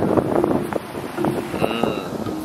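Wind buffeting the camera microphone on an open beach: a rough, crackling rush that rises and falls irregularly, with a few faint held tones underneath.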